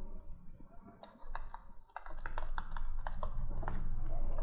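Stylus tapping and scratching on a pen tablet while a line of working is handwritten: a quick string of light clicks from about a second in, over a low steady hum.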